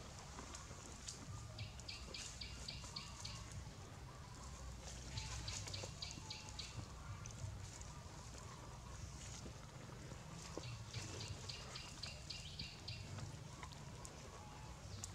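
A bird calling in quick runs of about seven high, evenly spaced notes, three runs in all, over a steady low outdoor rumble.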